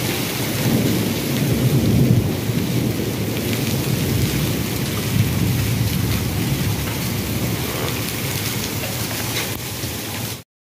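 Heavy rain pouring down steadily, with a deep low rumble underneath that swells in the first two seconds.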